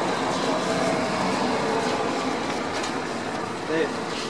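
Steady background noise with indistinct voices mixed in, and a short pitched sound near the end.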